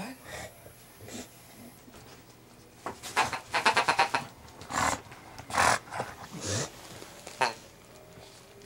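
English bulldog grunting and snorting in noisy bursts: a rapid rattling run about three seconds in, then four shorter snorts.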